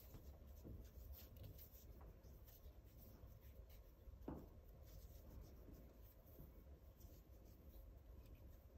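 Faint rustling and rubbing of a hitch cord sliding over a climbing rope as it is wrapped into a friction hitch, with one slightly louder brush about four seconds in.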